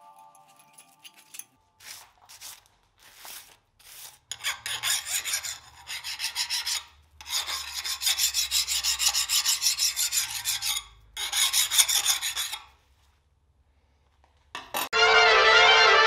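A hand file drawn back and forth over the edge of a freshly hardened 1095 high-carbon steel blade in quick rasping strokes: a few short scrapes first, then three longer runs of rapid filing. This is the file test for hardness, which the blade appears to pass. Near the end a loud burst of music cuts in.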